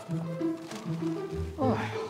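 Background music of steady held notes that step from pitch to pitch. Near the end a voice drops quickly in pitch in an exclamation of dismay.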